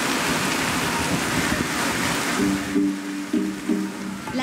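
Steady hiss of heavy rain. A plucked-string music melody of short repeated notes comes in about two and a half seconds in as the rain fades away.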